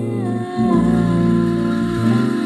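A band's studio recording with bass, piano and a held melody line that glides down early on, played back through a loudspeaker.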